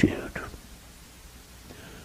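A man's voice trailing off at the end of a word, a soft breath, then a pause with faint room tone in a small hall.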